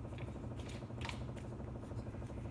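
Faint clicks and light scraping of a hex key turning a screw in an aluminium gimbal tripod head, as the screw is tightened down, over a steady low hum.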